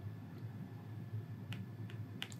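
A few faint, sharp clicks in the second half, over a low steady hum: input taps from handwriting being written onto a digital whiteboard.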